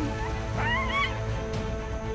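Background music, with one short, high cry that rises and falls a little over half a second in: a dog yelping in a leopard's grip.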